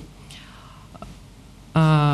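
A pause in speech with low, steady room tone, a faint tick about a second in, then a short held vocal sound, a drawn-out hesitation 'i…' before the speaker resumes, near the end.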